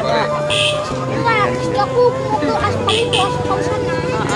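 Voices talking, with a steady engine drone underneath from a motor vehicle running nearby.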